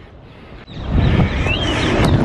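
Wind buffeting the camera microphone outdoors: fairly quiet for about half a second, then a sudden loud low rumble that continues. A short rising-and-falling bird chirp is heard about a second and a half in.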